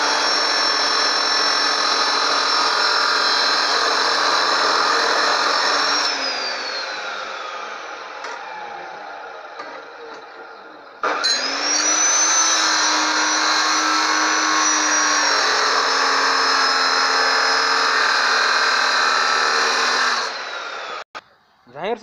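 Bosch abrasive cut-off saw (chop saw) cutting steel with a steady high whine. About six seconds in the motor is switched off and winds down, falling in pitch. It starts again with a rising whine about eleven seconds in, runs steadily, and cuts off shortly before the end.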